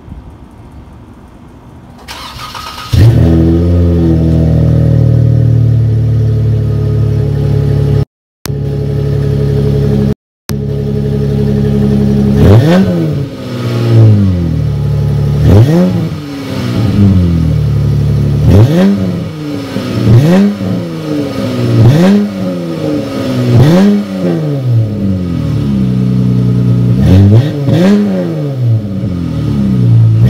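Car engine cold start: it is cranked and catches about three seconds in, then holds a steady fast idle. From about halfway on it is revved again and again, each rev rising and falling in pitch every two to three seconds.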